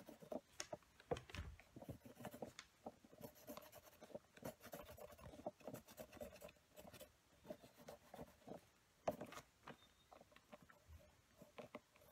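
Faint pen work on a paper journal page: a pen tip dotting and stroking, heard as irregular light ticks and scratches, one a little louder about nine seconds in.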